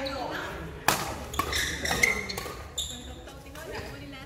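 Badminton rackets striking a shuttlecock during a doubles rally in a large indoor sports hall: sharp hits about a second in and again about two seconds in, with a lighter one between, over players' voices.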